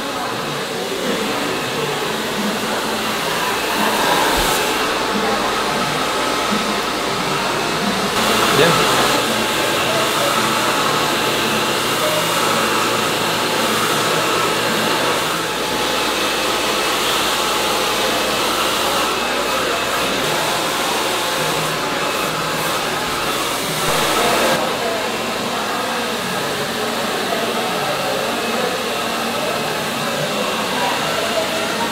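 Hand-held hair dryer blowing steadily while drying long hair, swelling louder briefly a few times as it is moved over the head.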